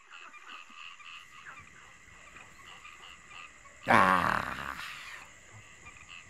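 A faint, evenly repeating high chirping in the background, then about four seconds in a loud, brief non-word sound from a person's voice, lasting about a second.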